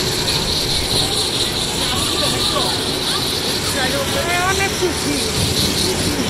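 Steady mechanical drone of a kiddie dragon roller coaster and the fairground machinery around it, the coaster's train running on its steel track close by. Children's voices call out over it in rising and falling cries, about two and four seconds in.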